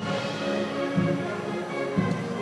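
Orchestral background music, with strings holding long sustained notes and the lower notes changing about a second in.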